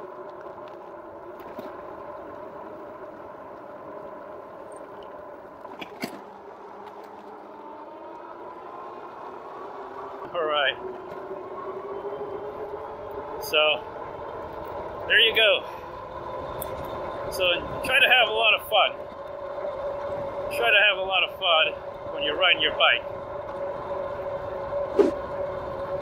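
A RadMini e-bike's geared rear hub motor whines steadily while riding, over tyre and wind noise. The whine rises in pitch about eight to twelve seconds in as the bike speeds up.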